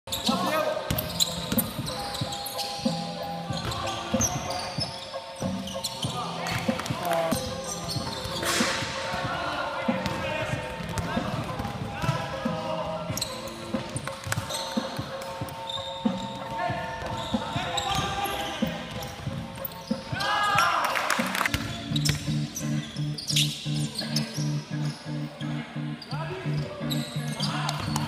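A basketball dribbled and bouncing on a wooden sports-hall floor during play, with players calling out and the sound carrying around the large hall. In the last several seconds a low tone pulses evenly about twice a second.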